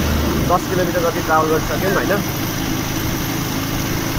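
Motorcycle engine running steadily under way, with road noise, heard from the rider's seat.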